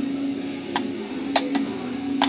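Steel tweezers clicking against a stainless steel kidney dish: three short, sharp metallic ticks, the loudest about halfway through. Music plays steadily in the background.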